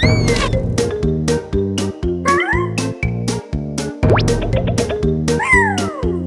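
Upbeat cartoon music with a steady beat, about three to four strokes a second. Over it, short squeaky cartoon cries, meow-like, slide up and down in pitch four times: a rise and fall at the start, rising cries about two seconds in, a quick upward swoop about four seconds in and a falling one near the end.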